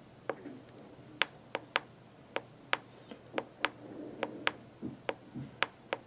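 A dozen or so sharp, irregularly spaced clicks from button presses on the Raptor ultrasonic flaw detector's keypad, as the velocity is stepped up until the thickness reading reaches 0.500 inch. A faint steady hum lies underneath.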